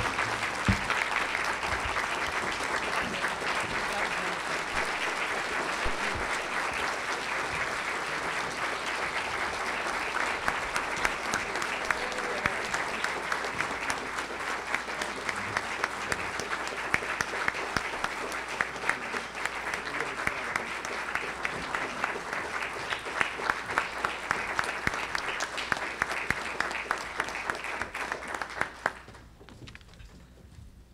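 A large audience clapping in a long, steady round of applause that dies away about a second before the end.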